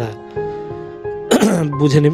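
Quiet background music holding sustained notes, then, about a second and a half in, a loud throat clearing from the narrator that runs into voiced sounds.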